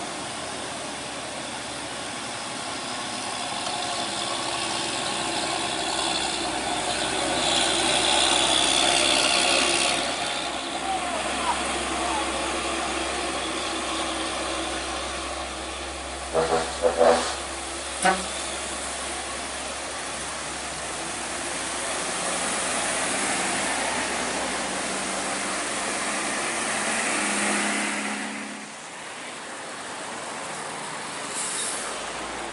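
Slow uphill traffic on a wet road: truck and car engines running, with tyre hiss off the wet surface that swells as vehicles pass. A few short horn blasts come about halfway through.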